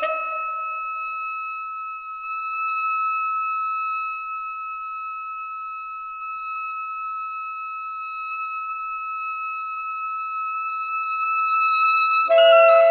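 A high saxophone note held steadily after a brief chord dies away at the start, swelling slightly toward the end.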